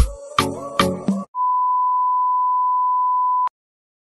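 The last beats of an upbeat intro music track end about a second in, followed by a steady electronic beep, a single pure tone held for about two seconds that cuts off abruptly with a click, then dead silence.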